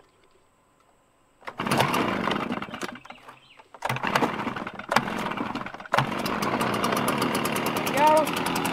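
Stihl BR 350 backpack blower's two-stroke engine being pull-started on choke. It fires in two short bursts that die away, then catches about six seconds in and keeps running steadily.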